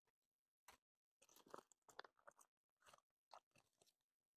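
Near silence, with faint scattered rustles and light clicks from hands handling paper money and a place card.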